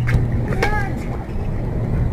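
A tennis racket strikes the ball once right at the start, and a brief shout follows about half a second later, over a steady low hum.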